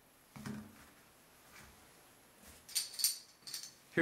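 Handling noise of aluminium escape hooks and rope: a soft rustle about half a second in, then a quick run of short, sharp clicks and taps near the end as the hooks are set down and moved on a carpet.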